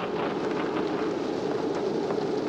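Steady low murmur of background chatter from diners in a restaurant dining room.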